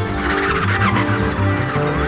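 Contemporary jazz group playing: bass and drums keep a repeating low pattern under held chords, while a horn plays a warbling, smeared high line with pitch glides.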